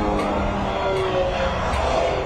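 Background music with long held notes and a faint regular tick, over a steady low rumble.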